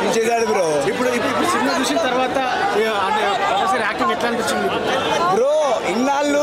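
Crowd chatter: several men talking over one another at once, with no single voice standing out.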